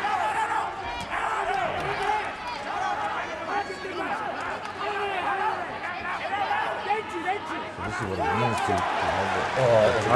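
Men's voices calling out over arena crowd noise during a kickboxing bout, with scattered applause.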